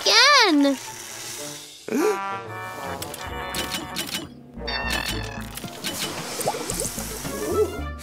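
Cartoon soundtrack: background music with characters' wordless vocal sounds, a swooping call at the start, and a few low thuds in the middle and near the end.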